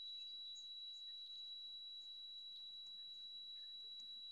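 A faint, steady high-pitched tone held at one unchanging pitch.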